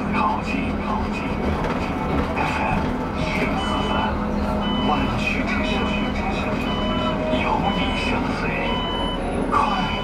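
Cabin of a battery-electric city bus on the move: steady low running noise with a faint electric drive hum. About three and a half seconds in, a short high electronic beep starts repeating a little faster than once a second, over voice and music from an on-board screen.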